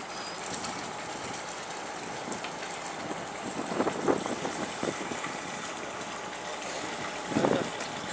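Steady background noise aboard a small fishing boat, the boat's engine running with wind and sea behind it, with brief murmurs of voices about four seconds in and again near the end.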